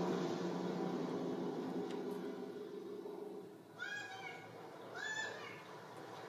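A cartoon cat on a film soundtrack meowing twice, short rising-and-falling meows about four and five seconds in. Before the meows, a lower sound fades out over the first few seconds.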